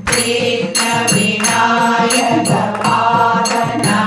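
Group devotional singing (a bhajan) to hand clapping and a barrel hand drum, keeping a steady beat of about three strokes a second.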